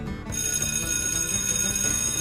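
A bell ringing, high and steady, starting a moment in and lasting about two seconds, over background music.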